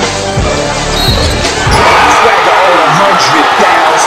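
Backing music with a heavy bass beat, which drops out a little under two seconds in. A gym crowd's noise then takes over, many voices shouting and cheering at once, louder than the music.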